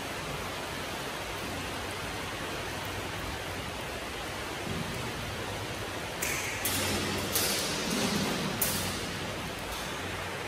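Steady hiss of rain on the steel roof and walls of a corrugated grain bin, heard from inside. A few light knocks come through in the last four seconds.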